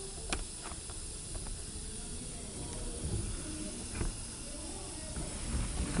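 Steady hiss of compressed air from a handheld pneumatic capping machine's air supply, with a few faint clicks as a freshly capped plastic jar is handled.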